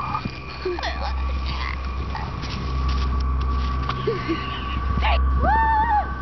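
Steady low rumble of wind on the microphone, with scattered light knocks and one short high pitched call near the end.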